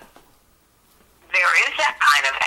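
A short pause, then a person's voice talking over a mobile phone's speakerphone, starting a little past the middle.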